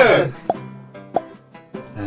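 Background music with two short popping sound effects, one about half a second in and one just after a second in.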